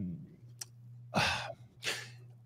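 A man sighs, breathing out audibly about a second in, then takes a short breath near the end before speaking again. A faint steady low hum runs underneath.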